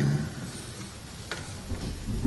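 Quiet hall ambience with a low, even hiss, the end of a spoken word fading out at the start and a single faint click about a second and a half in.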